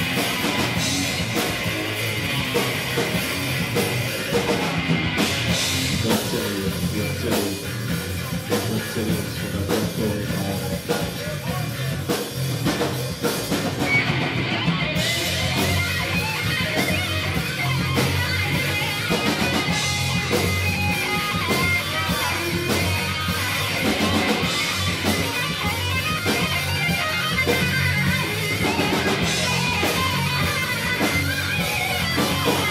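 Live heavy metal band playing: distorted electric guitar through a Marshall amplifier over a full drum kit. The cymbals drop out briefly about five seconds in and again near fifteen seconds.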